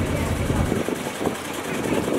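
Background chatter of an outdoor crowd, with a low rumble that drops away under a second in.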